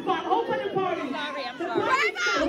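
Several people talking and calling out over one another: crowd chatter.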